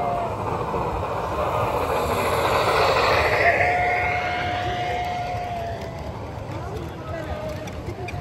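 A LEGO model freight train rolling past close by on plastic track, the rattle of its wheels and cars building to a peak about three and a half seconds in and then fading away. A thin steady tone sounds briefly at the start and again just after the peak.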